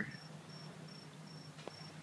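A cricket chirping faintly, one short high chirp repeated evenly about three times a second.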